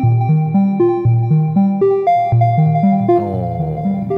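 VCV Rack software modular synth playing a stepped sequence of pitched synth notes, about four a second, from the Glass Pane sequencer through a quantizer. Near the end a falling pitch sweep glides down beneath the notes.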